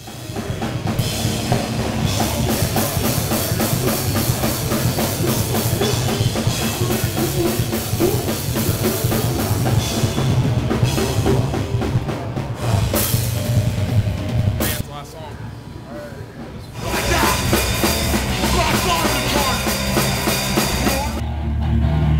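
Loud heavy rock music driven by a full drum kit, dropping quieter for about two seconds past the middle before coming back in full.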